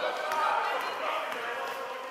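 Indistinct voices calling out in a gym during a youth basketball game, with a basketball being dribbled on the court.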